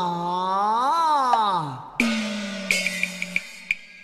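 Cantonese opera: a singer's drawn-out sliding cry swells up and falls away over a held instrumental note. About halfway through, the accompaniment comes in with a new sustained note and a few sharp percussion clicks.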